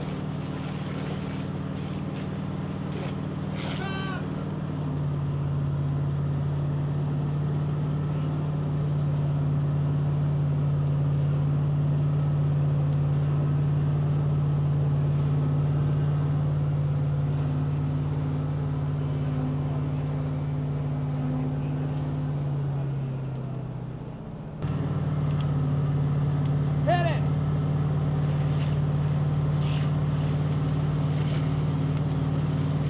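Steady low drone of a fire engine's pump engine running under load while a hose line flows, with a short voice call about four seconds in and again near the end. The drone dips briefly about three-quarters of the way through, then comes back in suddenly.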